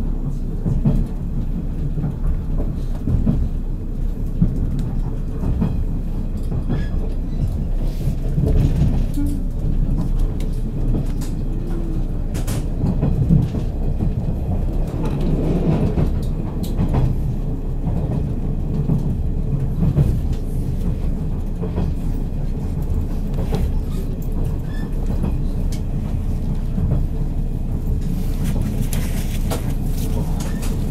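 JR 183 series electric limited express train running at speed, heard from inside the passenger car: a steady low rumble of wheels on rails with scattered sharp clicks.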